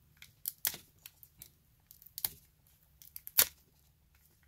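Foil wrapper of a Pokémon booster pack being torn open by hand: scattered sharp crinkles and rips, the loudest a little before the end.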